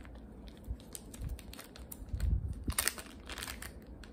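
Thin plastic sample bag crinkling and rustling in the hands as a small wax melt sample is taken out of it, with a louder flurry of crinkles about three seconds in.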